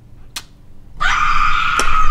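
A single kiss smack of pursed lips, then about a second in a loud, steady high-pitched sound lasting about a second.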